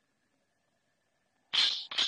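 Near silence, then about one and a half seconds in two gunshots half a second apart, each a sudden loud report with a short hissing tail.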